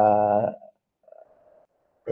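A man's voice holding a long, level hesitation sound ('uhh') that stops about half a second in, followed by a faint murmur and then near silence.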